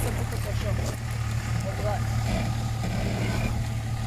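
Range Rover P38's engine running steadily at low revs, a constant low hum with no revving, with faint voices over it.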